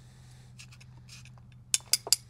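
Screwdriver tapping against a metal soil probe to knock the soil core out into a cardboard box: two sharp metallic clinks near the end.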